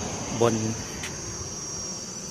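Insects in the surrounding vegetation making a steady, high-pitched continuous drone.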